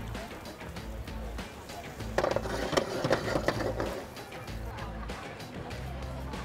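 Background music with a steady beat. About two seconds in, a patch of sizzling and crackling lasting about two seconds: diced chicken frying in hot oil with onion in a wok.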